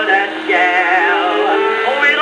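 Edison Diamond Disc phonograph playing a 1921 acoustic-era jazz-blues record: band music with a wavering lead line over steady held notes, the sound cut off above the upper midrange.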